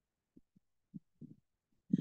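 A near-silent pause broken by several faint, short low thumps spread through the two seconds.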